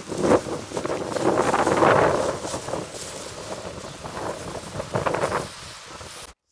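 Wind buffeting the microphone outdoors, a rough, gusting rush that swells loudest about two seconds in and then eases.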